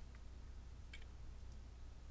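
Near silence: room tone with a low steady hum and a faint tick about a second in.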